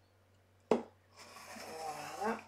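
A sharp click, then the scraping hiss of a craft knife blade drawn through thick grey cardboard along a ruler, growing louder near the end.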